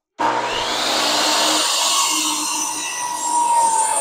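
DeWalt miter saw running and cutting through a 2x2 Douglas fir board. It starts suddenly, and the motor's whine sags slightly in pitch as the blade works through the wood.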